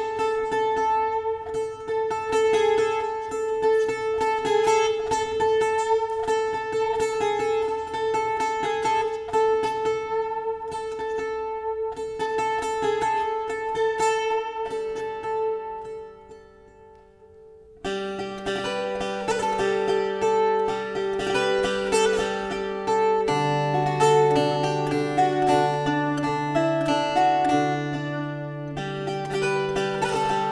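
Solo viola da terra, the Azorean guitar with two heart-shaped soundholes, played with a pick. For about fifteen seconds one high note is struck rapidly and repeatedly over a drone, imitating the sound of ox carts. After a brief soft dip, a plucked melody with bass notes comes in about eighteen seconds in.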